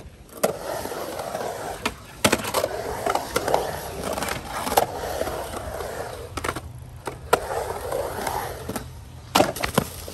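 Skateboard wheels rolling across a concrete bowl, with several sharp clacks of the board and trucks striking the concrete and coping. Near the end the board clatters loose as the rider bails a rock to fakie.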